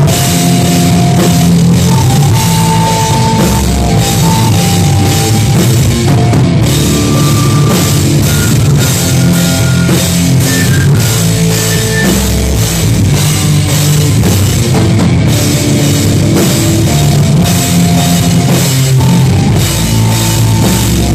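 A folk metal band playing live and loud: drum kit with cymbals, distorted electric guitar and bass guitar, with a flute melody of held notes over the top.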